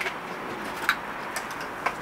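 Quiet room tone, a steady low hiss, with a few faint short clicks spread through the moment.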